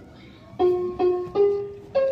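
Giant electronic floor piano sounding notes as a child steps on its keys: four plucked-sounding notes about half a second apart, the first two on the same pitch, then two stepping higher.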